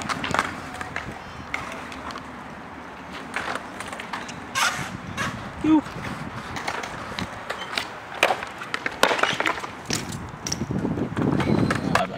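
BMX bike rolling on concrete skatepark ramps, with sharp clacks and knocks of tricks and landings scattered throughout.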